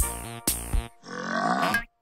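Light children's cartoon music, then about a second in a cartoon character's grumbling grunt that cuts off abruptly just before the end.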